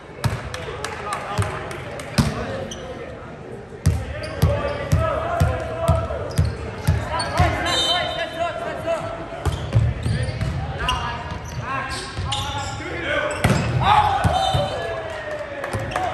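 A volleyball bouncing on a hardwood gym floor, repeated short thumps about two a second, with players' voices and shouts echoing in a large gym.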